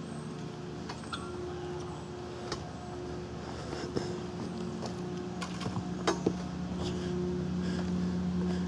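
Steady low machinery hum of several held tones, a little stronger in the second half, with scattered footsteps and light knocks of camera gear being handled.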